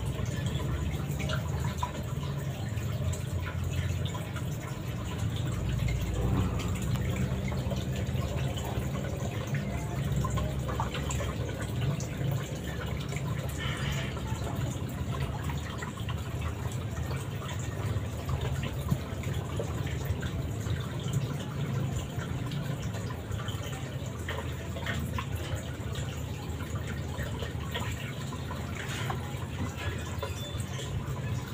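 Aquarium top filter's return water splashing and trickling steadily into the tank, with fine bubbling crackle over a steady low hum.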